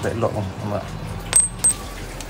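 Two sharp metallic clinks about a third of a second apart, each with a brief high ring, from small metal parts knocking together.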